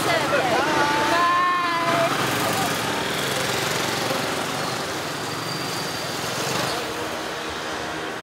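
Street traffic of motor scooters running, a steady mix of small-engine noise. Voices call out over it in the first two seconds.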